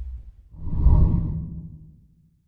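A whoosh sound effect accompanying a channel logo ident: one swell that rises about half a second in, peaks around a second in and fades away, following the closing music as it dies out.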